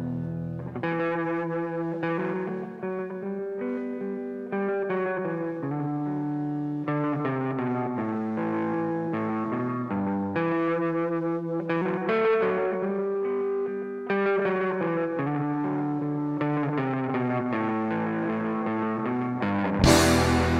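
Electric guitar through effects and light distortion playing a rock'n'roll intro of changing notes and chords, with a loud hit right at the very end.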